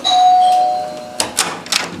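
Two-note electronic doorbell chime, a higher note then a lower one, ringing and fading within about a second. Then a few sharp clicks as the front door's lock and handle are worked.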